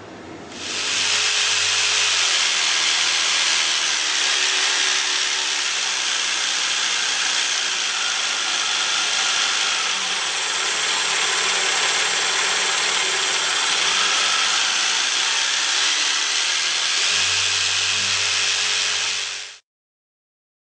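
Protool JSP 120 E jigsaw running with its reciprocating blade, a steady even mechanical noise that cuts off suddenly near the end.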